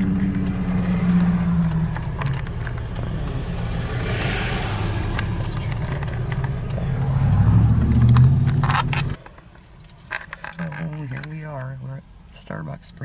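Car engine and road noise heard from inside the cabin while driving, swelling around seven to eight seconds in as the car pulls away, with light clicking and rattling throughout. About nine seconds in it cuts off abruptly to a much quieter stop with a voice.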